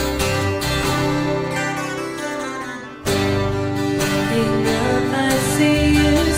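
Live band music: strummed acoustic guitars over bass and electric guitar. The playing thins out and falls quieter, then comes back in suddenly about halfway.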